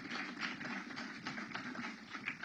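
Audience applauding: many scattered hand claps.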